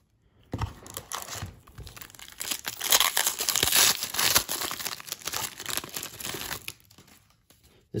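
A foil baseball-card pack being torn open by hand, its wrapper crackling and crinkling. It is loudest about three to four seconds in and dies away shortly before the end.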